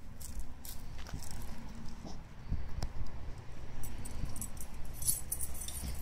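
Dog collar tags jingling lightly in scattered little clicks as the dogs move and sniff about, over a low steady rumble.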